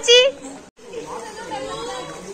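Voices only: a loud shout at the start, a brief dropout, then fainter chatter of several people.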